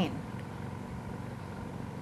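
Steady, low background noise with a faint hum from an outdoor live-feed microphone, with no distinct event; a woman's voice trails off at the very start.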